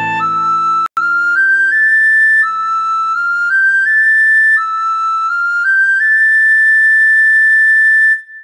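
Recorder playing a melody in three short rising runs of quick notes, ending on a long held high note, over low backing chords that fade away. There is a brief dropout about a second in.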